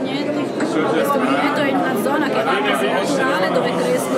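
A person speaking over steady chatter of many voices, in a large, busy hall.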